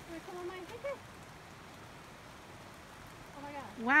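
A steady soft hiss of light rain on forest foliage. There is brief quiet speech in the first second, and a woman starts speaking near the end.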